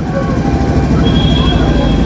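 A motor vehicle engine running close by, a steady low rumble with faint voices behind it. A thin, steady high tone joins it about halfway through.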